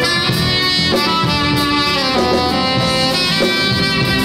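Soprano saxophone playing a smooth-jazz melody in held notes, backed by a live band with drums, bass, keyboards and electric guitar.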